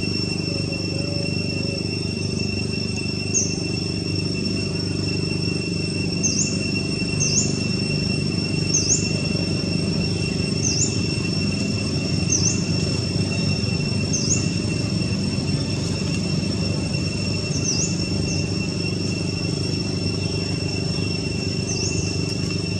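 Outdoor insect drone: a steady, high, unbroken whine. A bird gives short chirps every second or two over it, starting a few seconds in. Under both lies a steady low background rumble.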